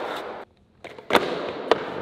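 Bongo board's deck and roller clacking sharply onto a concrete floor, each hit followed by a fading rumble as the roller rolls. A moment of dead silence breaks the sound about half a second in; a few lighter clicks lead into the loudest clack, and another click follows.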